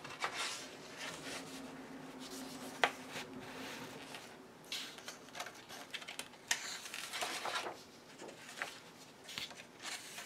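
Pages of a large paperback colouring book being turned and pressed flat by hand: paper rustling and sliding under the palm, with a couple of sharp paper snaps.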